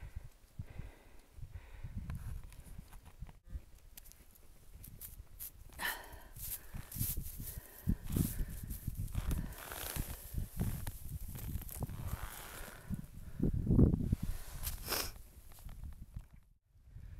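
Irregular crunching and scraping in snow, with low rumbling on the microphone and a louder thump about fourteen seconds in.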